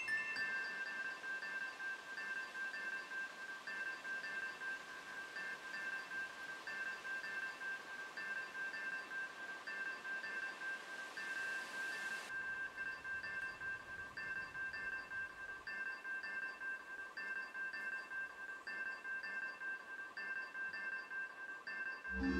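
Modular synthesizer playing a repeating pattern of a few high, steady pitched notes that pulse evenly a few times a second. A rising hiss of noise swells in about ten seconds in and cuts off suddenly around twelve seconds.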